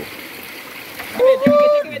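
Flowing river water, low and steady, then about a second in a loud, drawn-out vocal exclamation from a man.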